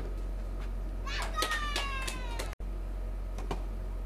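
A child's voice gives one long, high call, slowly falling in pitch, starting about a second in and lasting over a second, with a few sharp ticks of play around it. The sound drops out for an instant right after the call.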